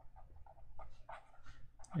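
Felt-tip marker squeaking and scratching on paper in a quick run of short, irregular strokes as words are handwritten, busier in the second half.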